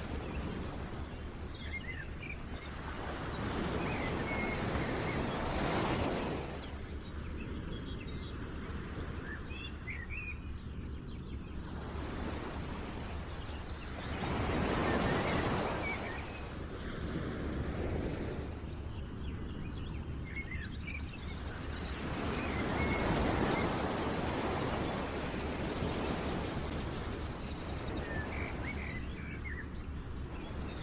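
Nature ambience track: a rushing noise that swells and fades every few seconds, like surf or wind, with scattered bird chirps.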